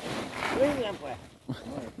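A man's voice making short, untranscribed vocal sounds, over a rustle of chopped silage being dropped into a burlap sack.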